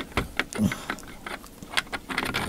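Scattered light metal clicks and knocks as a doorknob's square brass spindle is slid through the knob hub of an old iron rim latch, rattling loosely where the worn bushes leave it slack.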